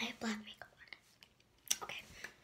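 A girl whispering softly in short snatches, with a brief voiced sound just after the start and another sharp snatch near the end.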